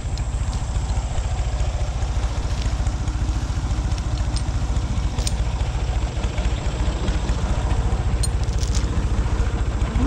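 Ford 3600 tractor's three-cylinder engine running steadily with an even low pulse.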